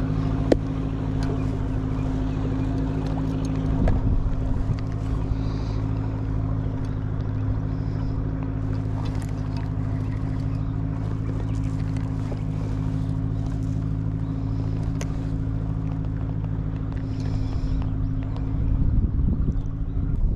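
A boat engine running with a steady, low drone that holds one even pitch, fading out near the end.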